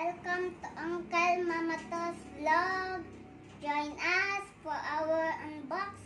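A young boy singing on his own without accompaniment, in short phrases with held and gliding notes and brief pauses between them.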